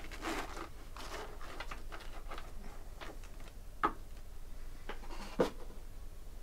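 Trading cards being handled and flicked through: light, irregular rustling and soft clicks, with two sharper clicks in the second half.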